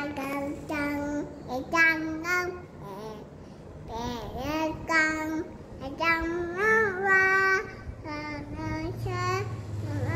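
A two-and-a-half-year-old child singing in a high voice: a run of short held notes with babbled syllables, a few sliding up and down in pitch.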